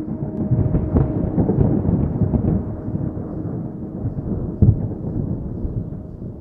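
Thunder rumbling with crackles and one sharper clap a little before five seconds in, slowly fading, under a soft held musical note.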